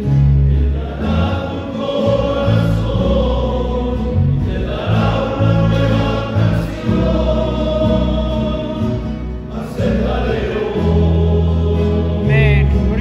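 A men's choir singing a hymn together.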